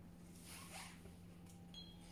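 Near silence: room tone with a faint steady low hum and a few faint, brief rustles.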